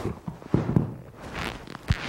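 Two grapplers rolling on a foam training mat: gi cloth rustling and brushing, with several dull thumps of bodies landing, one about half a second in and a sharper one near the end.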